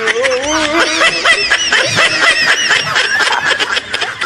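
Laughter, a long run of quick pulses that goes on throughout.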